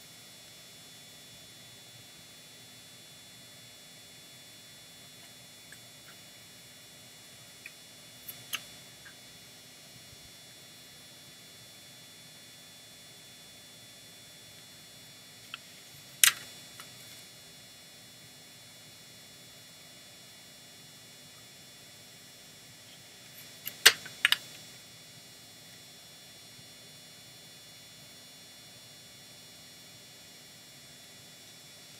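Low steady background hiss with a faint electrical whine, broken by a few short sharp clicks from a passport booklet's pages being handled and turned: a couple about eight seconds in, a louder one around sixteen seconds, and a quick double click near twenty-four seconds.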